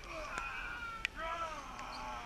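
Several people yelling and crying out over one another in long, bending shouts, with a sharp knock about a second in.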